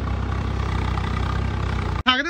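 Tractor's diesel engine running steadily at a constant pitch as it pulls a tined cultivator through a flooded paddy field.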